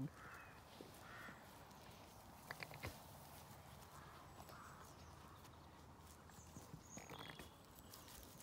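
Near silence outdoors, with a few faint clicks a little under three seconds in and soft rustling near the end.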